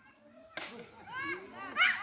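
Children's voices calling out in high-pitched shouts, starting about half a second in and loudest near the end.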